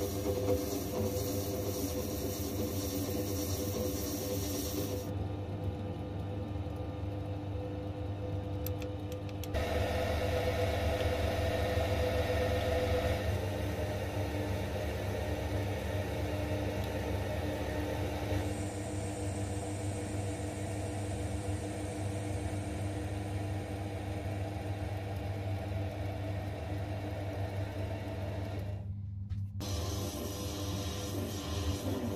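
Small metal lathe running with a steady motor hum while cutting a brass cylinder; the sound changes abruptly several times, and midway a twist drill in the tailstock bores into the brass.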